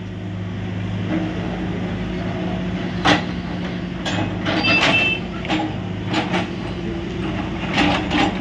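Case 770EX backhoe loader's diesel engine running steadily while its bucket knocks down a brick wall. Bricks crash and clatter onto the rubble pile: one loud crash about three seconds in, then a run of knocks a second or two later.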